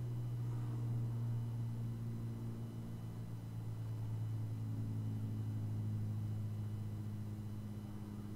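Steady low hum of a mechanical wave driver shaking a stretched string, driven by a function generator at about 189 Hz in a standing-wave demonstration.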